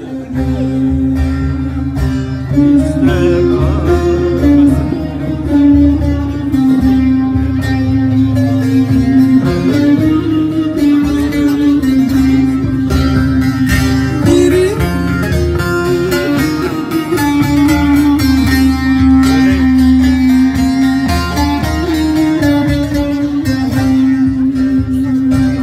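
Instrumental passage of a Turkish folk song: a plucked string instrument plays the melody over a sustained low note, with little or no singing.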